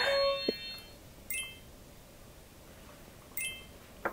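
Edited-in chime sound effects over a quiet room: a bright ringing chime fades away at the start, then two short dings sound about a second and a half and three and a half seconds in.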